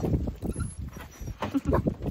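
An excited small dog making short whining yips, among a string of quick clicks and knocks.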